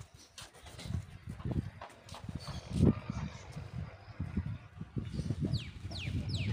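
Irregular low rumbling on the microphone outdoors, the strongest bump about three seconds in, with a bird's rapid high whistled calls, each falling in pitch, starting near the end.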